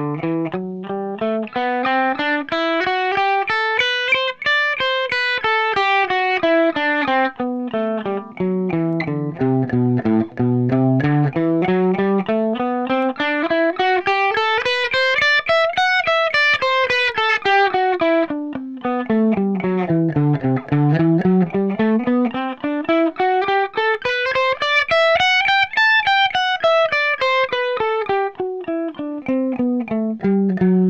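Electric guitar playing an A minor scale three notes per string with alternate picking, as an even stream of single notes. The line runs up the neck and back down three times, each climb reaching higher than the last.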